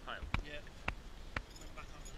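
A spade striking earth: three sharp thuds about half a second apart.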